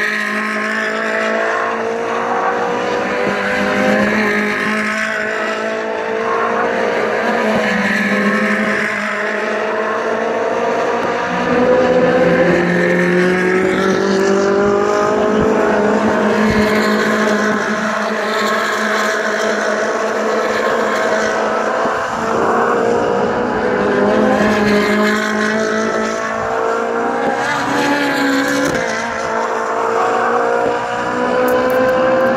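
Several racing engines running at once without a break, their pitches slowly rising and falling as they go round.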